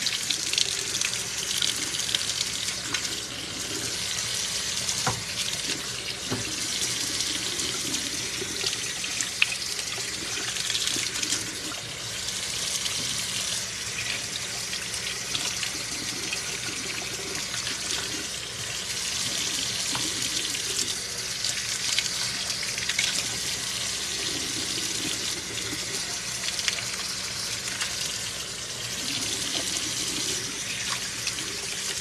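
Kitchen faucet running steadily into a sink while vegetables are rinsed by hand in the stream, the water splashing off them, with a couple of light knocks along the way.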